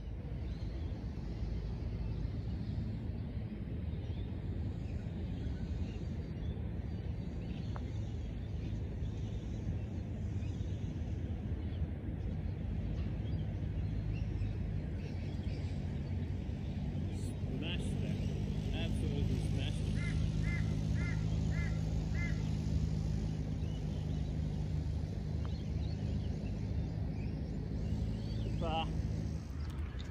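Open-air background with a steady low rumble; from about halfway an engine hums steadily in the distance. A bird gives a quick run of five short chirps about two-thirds of the way through.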